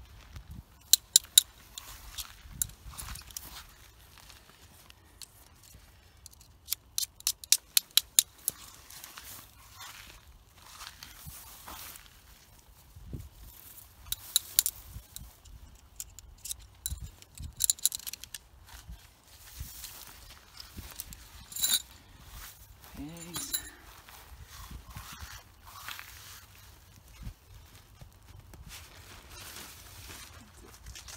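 Sharp clicks as tent stakes and guy lines are pulled and gathered while an ultralight tent is taken down: two about a second in, then a quick run of about eight between six and eight and a half seconds, with scattered clicks and rustling after.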